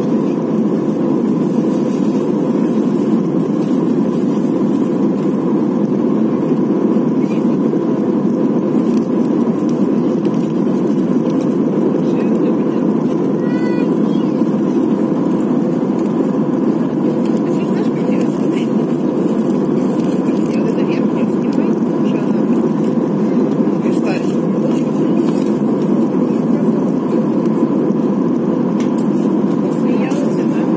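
Steady cabin noise inside an Airbus A320-family airliner during the climb after take-off: the engines and the airflow past the fuselage make an even, loud rush, with a steady hum running under it.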